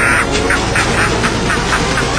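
A cackling laugh: a quick run of short "ha" bursts that come faster and shorter as it goes, over sustained low music notes.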